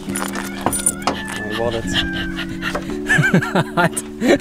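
Background music with held chords that change every second or so, with a few short clicks early on and brief voice sounds near the end.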